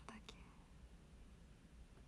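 Near silence: low steady room hum, with a brief soft breath or murmur of a woman's voice at the very start.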